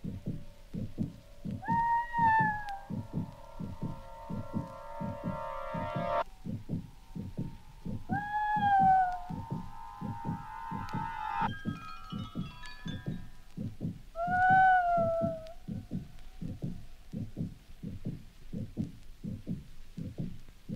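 Electronic tape music: a fast, even low throbbing pulse runs under held electronic tones. A sliding tone rises and falls three times, and a short flurry of high bleeps comes just before the middle.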